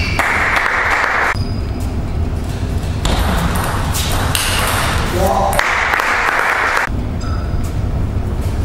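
Table tennis rally: the ball clicking off the rackets and bouncing on the table, again and again. Two stretches of rushing noise, each about a second long, fall near the start and about six seconds in.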